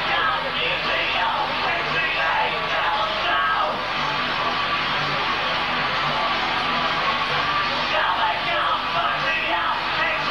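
Industrial metal band playing live: electric guitar and drums with a shouted lead vocal over a steady beat.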